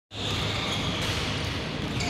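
Sports-hall ambience: basketballs bouncing on the court under a steady background noise of a large hall.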